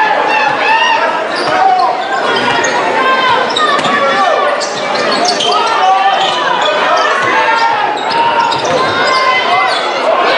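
Basketball being dribbled on a hardwood court over the steady chatter of a crowd in a large gym.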